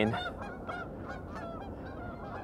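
A flock of birds calling, many short repeated calls overlapping in the background.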